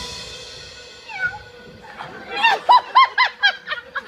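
An orchestra's final chord fades away. About two seconds in, a single voice gives a quick run of pitched yelps or laughs, about six a second, over a faint held note.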